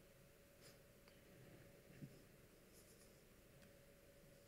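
Near silence: faint room tone with a steady low hum, a few faint clicks and a soft thump about two seconds in.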